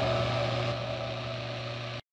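Electric guitar's last chord ringing out and slowly fading, with a steady low tone underneath; it cuts off suddenly at the end.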